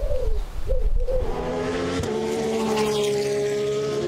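A vehicle engine running with a steady note that slowly sinks in pitch from about halfway in, after a wavering sound in the first second.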